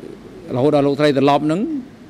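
A man speaking a short phrase into a microphone, starting about half a second in and ending on a rising pitch.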